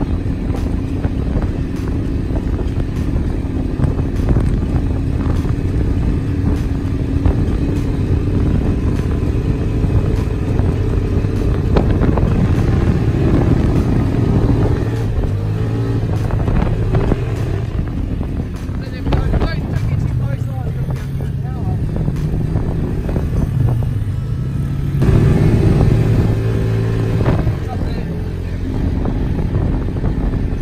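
Quad bike (ATV) engine running steadily under way across sand, louder for a couple of seconds about 25 seconds in.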